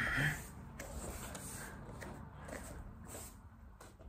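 A man breathes out hard once right at the start, between sets of push-ups. After that there is low room noise with a few faint rustles from his hands and knees on a wooden floor.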